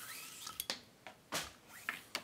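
Thin cord being pulled and knotted around a small glass jar's metal lid: a short rising zip of cord sliding through the fingers, then a few light clicks and rustles of handling.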